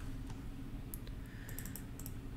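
A few light computer keyboard keystrokes: one about a second in, then a quick run of several more in the second half, over faint room hum.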